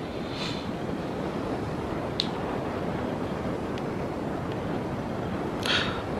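Steady background hiss of room noise, with a single short, sharp click a little after two seconds in.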